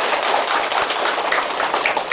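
A roomful of people applauding: steady, dense hand-clapping.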